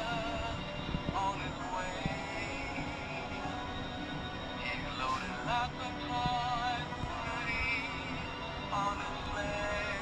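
Light-up plush snowman animatronic playing a recorded Christmas song through its built-in speaker: a wavering, vibrato-laden melody over steady backing music.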